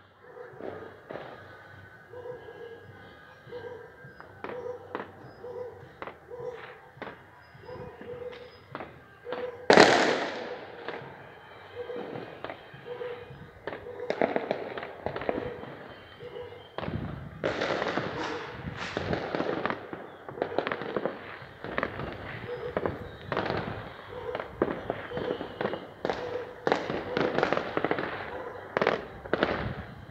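Fireworks going off: scattered bangs and pops, one loud bang about ten seconds in, then a dense, continuous run of bursts through the second half.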